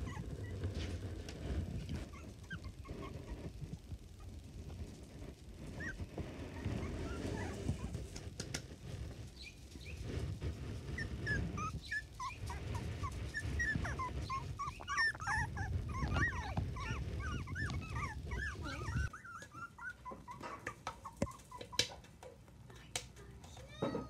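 Three-week-old miniature dachshund puppies whimpering and squeaking in many short, high cries, few at first and thickest in the second half.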